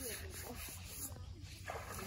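Faint voices of people talking in the background, with a short lull about a second in, over a steady low outdoor noise.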